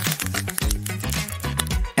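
Background music with a steady beat: bass line and percussion.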